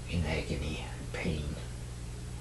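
A person whispering softly for about a second and a half over a steady low hum.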